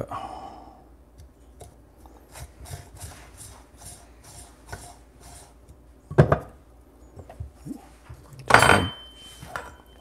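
Coffee grounds being stirred in a metal portafilter under a dosing funnel: soft, quick scraping ticks. About six seconds in comes a sharp knock, and near the end a louder metal clatter with a brief high ring as the portafilter and funnel are handled.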